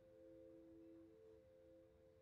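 Near silence, with a faint steady hum of a few held tones together.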